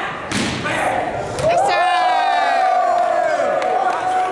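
A volleyball jump serve struck with a sharp smack, followed about a second later by further thuds of the ball. Then several voices yell and cheer in long, loud shouts as the serving team wins the point.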